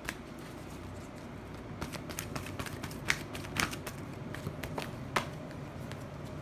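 A deck of tarot cards being shuffled by hand: irregular soft clicks and slaps of the cards, a few sharper ones standing out.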